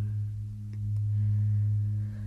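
A steady, low, sustained instrumental drone holding under a pause between sung phrases of a slow folk song.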